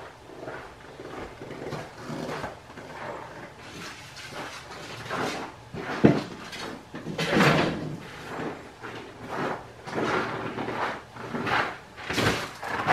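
Irregular knocking and rustling, with a sharp click about six seconds in and louder strokes after it.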